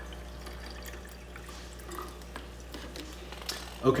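Faint trickling and dripping of liquid algae culture running from one plastic bottle into another as the pour ends, with a few light taps from handling the plastic bottles over a steady low hum.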